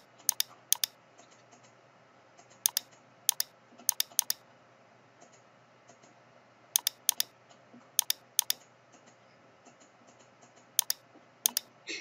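Computer mouse button clicking: about a dozen sharp clicks, mostly in pairs a fraction of a second apart with gaps of one to two seconds between them, over a faint steady room hum.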